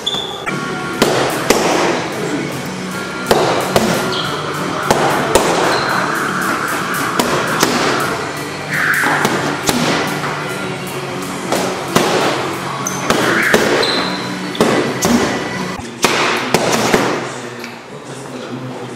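Punches smacking into boxing focus pads: sharp hits coming irregularly, singly and in quick combinations.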